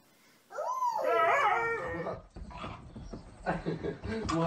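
A dog giving a short howling whine that rises and then falls in pitch, about half a second in and lasting under two seconds. Quieter low noises follow.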